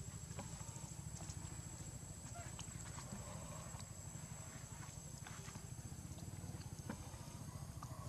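Outdoor background noise: a steady low rumble with a thin, steady high-pitched whine above it and scattered faint clicks.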